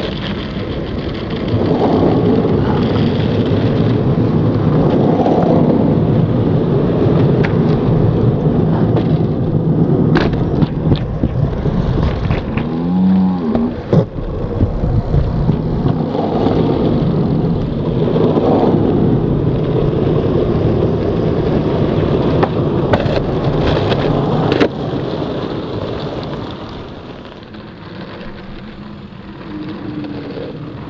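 Skateboard wheels rumbling steadily over concrete, picked up close to the board, with a few sharp clacks about ten, fourteen and twenty-four seconds in. The rumble eases off near the end.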